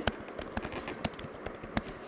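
Computer keyboard keys clicking in a quick, irregular run of keystrokes as words are typed.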